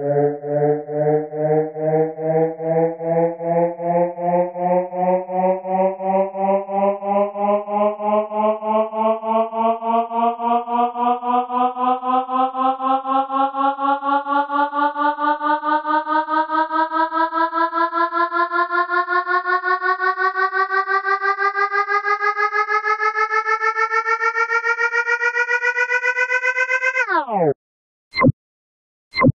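Electronic-music synth riser: one pitched synthesizer tone climbing slowly in pitch, pulsing faster and faster, then diving sharply in pitch and cutting off near the end.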